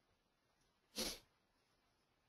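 Near silence broken about a second in by one short burst of noise, about a quarter of a second long.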